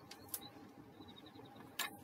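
Faint clicks and taps from hands handling a card shadow-box frame on a cutting mat: two light clicks in the first half second and a sharper tap near the end.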